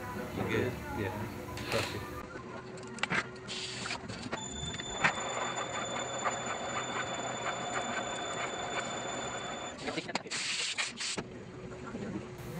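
Sunnen valve seat machine's spindle running for about five seconds with a steady high whine, as a single-blade radius cutter cuts a valve seat. Short bursts of hiss come just before and just after the cut.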